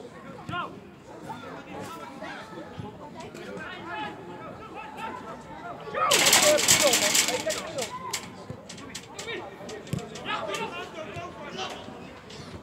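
Several people's voices calling out and chattering around a football pitch, with a loud, noisy burst of shouting about six seconds in that lasts a second or two.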